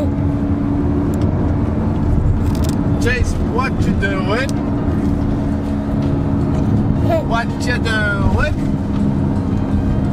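Car driving, heard from inside the cabin as a steady low rumble with a low hum. Over it a baby vocalizes in short, sharply rising squeals, once about three seconds in and again about seven seconds in.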